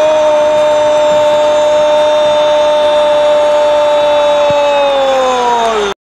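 A Spanish-language football commentator's drawn-out goal call: one loud held shouted note lasting about six seconds, sagging in pitch at the very end just before it cuts off.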